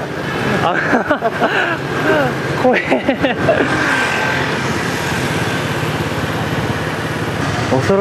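Motorbike engine and road noise heard from the pillion seat while riding along a city street, a steady hum under an even rush. Voices come over it in the first few seconds.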